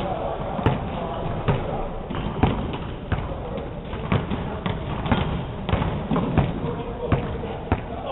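Basketballs bouncing on a hardwood gym floor: single sharp thumps at irregular intervals, over a steady background of voices.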